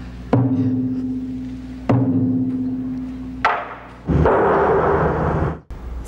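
Deep drum struck three times, about a second and a half apart, each stroke ringing on and fading, as part of opening theme music. A denser, noisier swell follows and cuts off suddenly.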